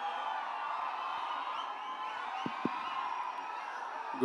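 Crowd in a large hall cheering at a low level, with scattered whoops. Two brief low thuds come about two and a half seconds in.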